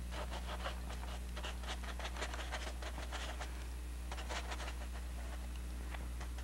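Oil-paint brush strokes on canvas: many short, irregular scratchy brushing sounds as paint is worked into the clouds, over a steady low hum.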